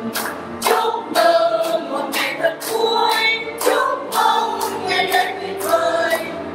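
A small group of women and men singing a song together while clapping their hands in time, at about two claps a second.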